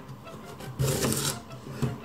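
Kitchen knife cutting through a raw carrot on a plastic cutting board: one long cut about a second in, then a sharp tap of the blade on the board near the end.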